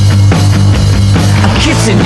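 Rock band recording: loud, steady bass and drums with regular beats, a voice joining near the end.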